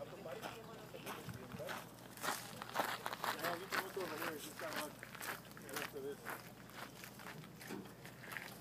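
Indistinct voices talking off-mic, with footsteps and scuffs on dry dirt.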